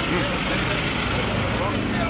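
A race car's engine idling, a loud, steady rumble, with faint crowd voices over it.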